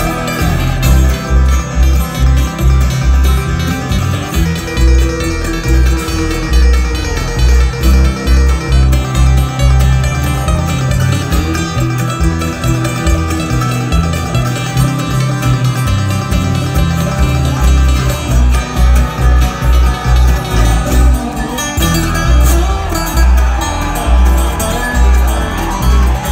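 Live bluegrass string band playing an instrumental passage: acoustic guitar, banjo and dobro over an upright bass that pulses steadily about twice a second.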